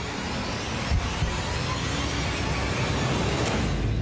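Suspense sound design: a low rumbling drone under a rush of noise that swells toward the end, with a single thud about a second in.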